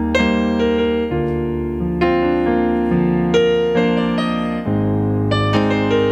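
Slow piano-led music with no singing: chords struck roughly every second over held bass notes.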